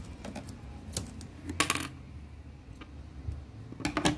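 A crochet hook and scissors handled on a table: a few short hard clicks, with a brief clatter a little after one and a half seconds in, as the hook is set down and the scissors picked up.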